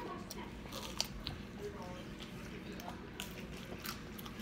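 Quiet close-up eating: chicken nuggets being chewed, with a few short crisp bite and crunch clicks scattered through.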